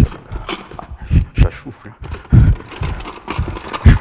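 Hands rummaging in a plastic bucket: irregular knocks and rustling as things inside are moved about.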